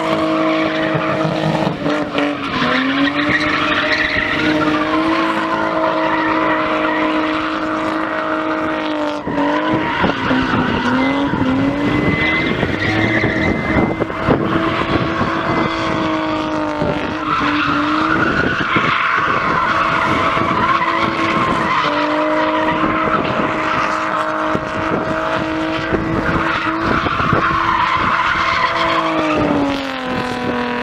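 BMW drifting in circles: the engine is held at high revs while the rear tyres spin and squeal, the revs dipping briefly and climbing back several times.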